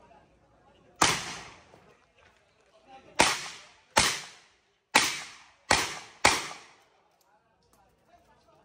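Six handgun shots fired during a practical shooting stage: one about a second in, then five more in quick, uneven succession between about three and six and a half seconds, each loud crack trailing off in a short echo.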